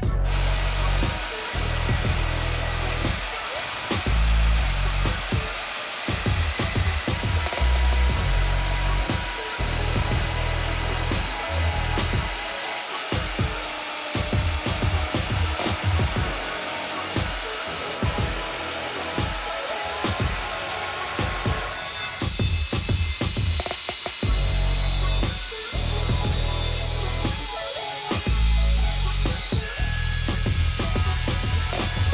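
Background music with a heavy bass beat over the steady noise of power tools cutting steel: a portable band saw, then an angle grinder in the last seconds.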